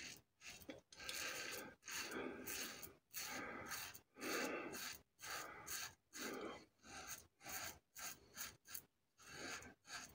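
Parker Variant adjustable double-edge safety razor, set to 3, scraping through lathered stubble in a rapid series of short strokes, each a brief rasp with a short gap between. The strokes come about fifteen times in ten seconds, some longer ones in the middle.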